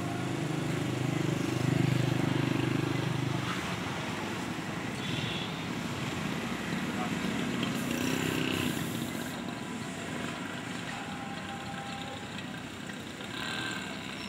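Indistinct voices over steady outdoor background noise, with a low hum that is strongest in the first few seconds and again about eight seconds in.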